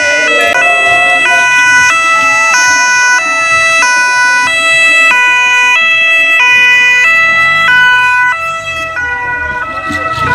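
A police motorcycle escort's two-tone siren, alternating high and low about every two-thirds of a second. It gets somewhat quieter a little after eight seconds, as the motorcycle passes.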